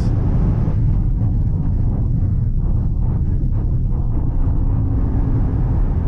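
Wind and tyre noise inside the cabin of a Voyah Free SUV braking hard from about 220 km/h to about 160 km/h: a loud, steady deep rumble whose higher hiss thins out after the first second as the speed falls.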